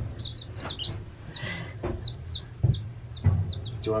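Baby chicks peeping: a steady run of short, high cheeps that drop in pitch, about three a second. A couple of soft knocks come in the second half.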